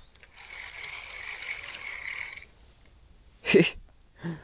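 Fishing reel being cranked for about two seconds, a steady rasping whirr as a hooked fish is wound in. Near the end comes a short, loud voice sound.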